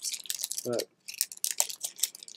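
Foil booster-pack wrapper and trading cards being handled, a quick string of short crackles and clicks, with one spoken word about a third of the way in.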